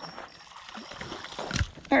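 A hooked trout is landed on a dirt bank, hitting the ground with a single thump about one and a half seconds in, against a quiet outdoor background.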